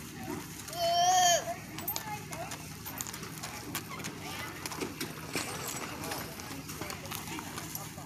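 Horse hooves clip-clopping faintly on gravel as a horse walks past, under background voices. About a second in, a short, high, wavering call rises above the rest.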